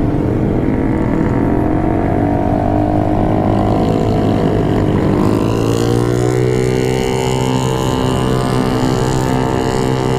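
Motorcycle engine pulling away at low speed in low gear. Its note rises, sags slightly, then rises again and holds steady, over a rush of wind and road noise.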